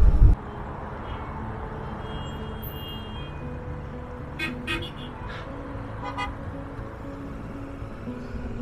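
Car horns tooting in busy city traffic, a few short toots about four to six seconds in, over quiet background music with a slow melody. For the first moment the wind rush of a motorcycle ride is heard, then it cuts off.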